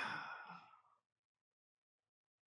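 A man's breathy sigh, fading out within about a second.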